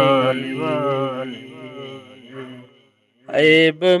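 A man singing an Urdu naat, holding a long wavering note that fades away, then a brief silence about three seconds in before the next line begins.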